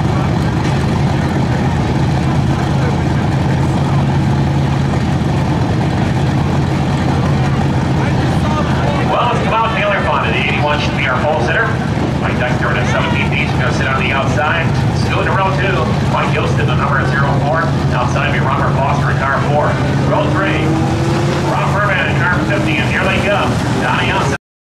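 Steady low drone of dirt-track race car engines running, with people talking over it from about nine seconds in.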